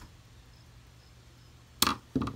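Faint steady hum, then one sharp knock near the end as a hard object strikes the wooden workbench.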